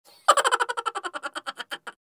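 A comic sound effect: a fast run of short, ringing blips that starts about a third of a second in, then slows and fades away.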